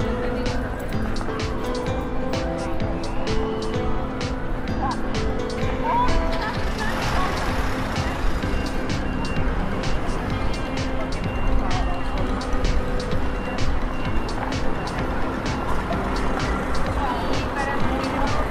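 Music with a steady melody over the murmur of a pedestrian street at night: people talking, frequent short clicks, and a car passing about seven seconds in.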